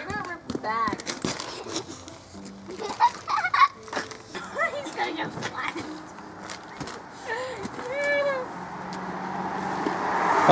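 Children's voices in short wordless calls and exclamations, mixed with crinkling and scraping as a heavy plastic-wrapped peat moss bale is hauled and handled on asphalt.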